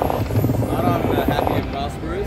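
Casino floor sound: voices talking over a steady low rumble.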